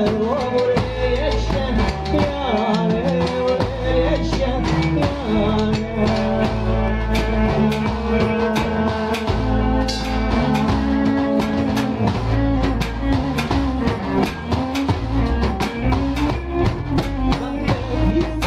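A live folk dance band playing: diatonic accordion, double bass and drums keeping a steady beat, with a man singing into a microphone.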